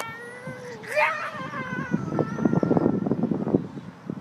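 A girl's long, high-pitched wail that jumps up into a scream about a second in, an acted cry as she drops from a roof ledge. Rustling, crackling noise follows through the rest.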